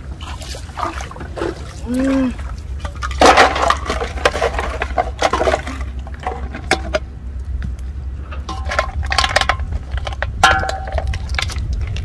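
Clattering knocks and clicks of empty plastic bottles and an aluminium basin being handled and set down on the ground, with a few ringing metallic clinks from the basin later on. A steady low rumble runs underneath.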